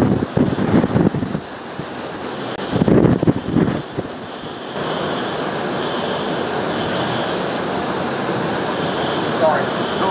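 Category 4 hurricane wind and torrential rain. For the first few seconds the gusts buffet the microphone in irregular blasts. About halfway through this gives way to a steady, loud rush of wind-driven rain.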